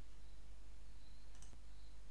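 Steady faint microphone hiss with a low hum, and one soft computer mouse click about a second and a half in.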